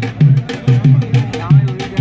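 A drum beaten in a fast, steady rhythm, about four deep beats a second, each with a sharp click. A wavering voice comes in near the end.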